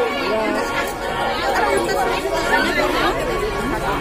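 Crowd chatter: many people talking over one another at once, a steady babble of overlapping voices.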